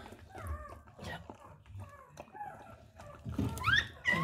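Newborn puppy squeaking: a string of short, high-pitched squeaks, ending in a couple of sharper rising cries.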